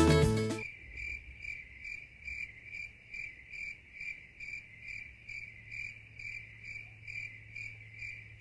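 Background music cuts off under a second in, leaving a cricket chirping steadily, about two chirps a second, over a faint low hum.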